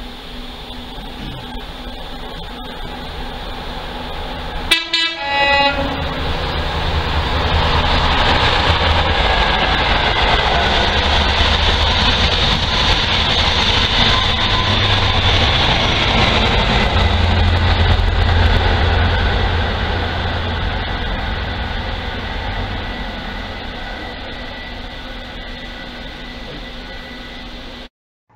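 High Speed Train (Class 43 power cars with Mk3 coaches) passing through a station at speed. A short horn blast sounds about five seconds in, followed by the rising rush of the train going by, which stays loud for about ten seconds before fading away.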